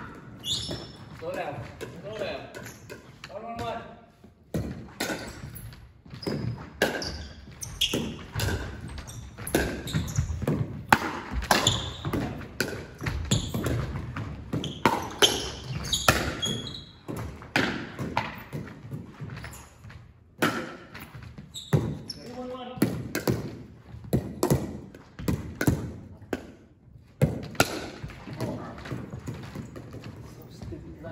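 Indoor pickleball play: repeated short knocks of paddles hitting the plastic ball and the ball bouncing on a hardwood gym floor, scattered irregularly, with indistinct voices in a large, hard-walled gym.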